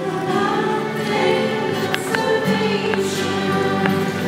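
A hymn sung to acoustic guitar accompaniment, with sustained sung notes over strummed and plucked chords.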